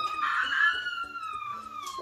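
A child's long, high-pitched 'ooooh', held for almost two seconds with its pitch sliding slowly down: a teasing reaction to the topping just drawn.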